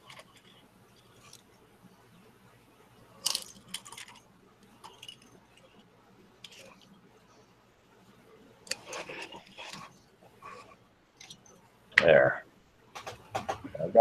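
Light, scattered clicks and scrapes of steel straightedges and wood veneer being handled and slid on a cutting mat, with a sharper knock about three seconds in and a brief louder sound near the end.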